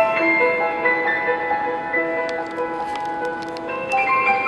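Solo piano playing in the middle and upper register, with notes struck and left to ring. A new group of notes comes in near the end.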